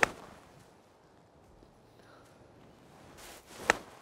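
Two crisp strikes of a 50-degree Titleist Vokey SM10 wedge on golf balls off turf in full wedge shots. The first and louder comes right at the start; the second comes near the end, just after the short swish of the swing.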